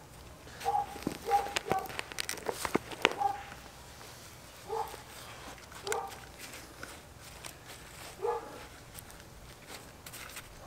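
Gloved hands working potting soil around a marigold in a plastic bucket, with soft rustles and a run of small clicks in the first three seconds. Several short, high animal calls, like a dog's yelps, come through at intervals.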